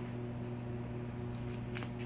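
A steady low electrical or ventilation hum from the room, with a few faint clicks near the end.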